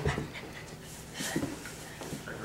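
A child on all fours acting as a dog, panting in a few short breathy puffs.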